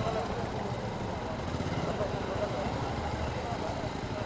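Several motorcycle and scooter engines idling together in a low steady rumble, with indistinct voices of people talking over them.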